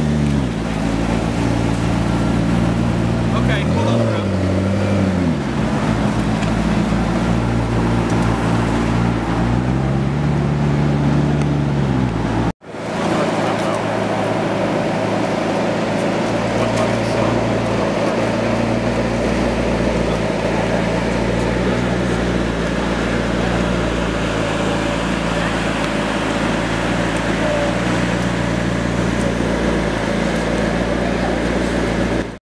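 Supercar engines: revs rise and fall a few times, then after an abrupt cut about halfway through, an engine idles steadily.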